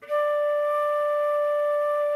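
Concert flute holding one steady D for four counts, a single clear sustained note.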